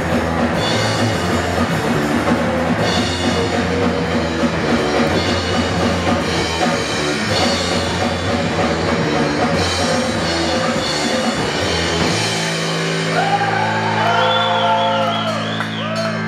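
Hardcore punk duo playing live on bass guitar and drum kit, fast and loud. About twelve seconds in, the full band sound drops away and a held bass note rings on, with wavering higher tones over it.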